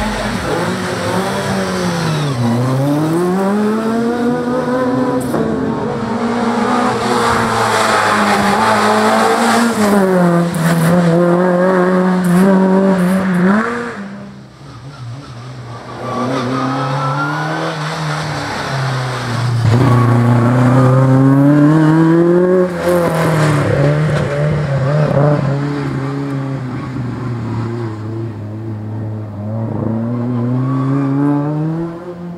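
Race car's engine driving a slalom course, pulling up through the revs and dropping back again and again as the driver accelerates and lifts off between gates. It fades briefly about fourteen seconds in before coming back strongly.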